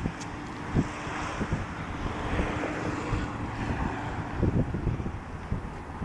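Wind buffeting a handheld phone's microphone in irregular low rumbles over a steady hiss of outdoor street noise, with a faint steady hum through the first few seconds.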